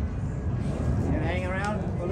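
A person's voice over a steady low rumble of a road vehicle. The voice comes in the second half.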